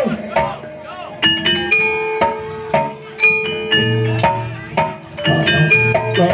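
Javanese gamelan playing: metallophone bars struck in a quick succession of ringing notes, joined by low kendang hand-drum strokes about four seconds in.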